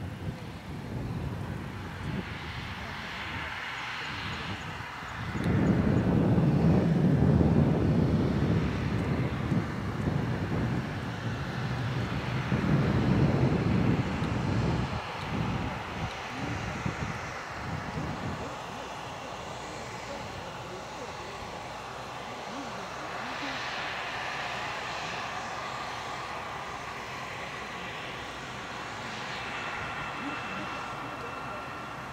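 Turbofan jet engines of a Fuji Dream Airlines Embraer E-Jet (GE CF34) running as the airliner rolls along the runway. The sound rises suddenly and loud about five seconds in, swells again a little later, then settles to a steadier sound with a high whine near the end.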